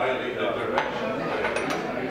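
China crockery clinking as a small porcelain jug is set down and the lid is put on a china teapot: a few sharp clinks, one about a second in and a pair near the end.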